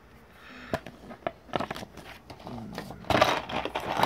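Handling of a small cardboard box and its paper insert card: a few light clicks and taps, then louder rustling and scraping from about three seconds in.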